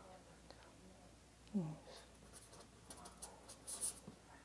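A pen scratching on paper in a quick run of short strokes through the second half, the strokes growing louder near the end. A woman's brief low "hmm" about a second and a half in is the loudest sound.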